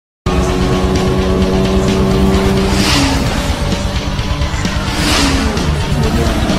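Sports car engine sound effect over music: the engine holds a steady high note, then two fast drive-by whooshes about three and five seconds in, each dropping in pitch as it passes.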